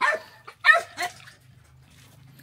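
A puppy giving three short barks: one right at the start, then two close together under a second later.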